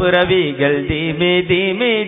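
A solo voice singing a slow, heavily ornamented melody whose pitch wavers and bends on held notes, with short taps behind it.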